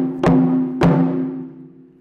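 Chu-daiko (Japanese barrel taiko drum) struck hard with wooden bachi in 'don' hits, the biggest taiko stroke. Two strikes land about 0.6 s apart, each with a deep ringing boom that fades over about a second.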